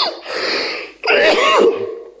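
A man coughing and clearing his throat into his hand at a microphone, twice, the second time louder, about a second in.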